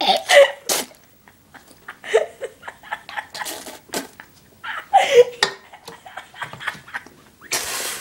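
A man's short bursts of laughter and coughing, with sharp breaths between them, as he reacts to the burn of a mouthful of crushed chillies. A loud rushing burst of breath comes near the end.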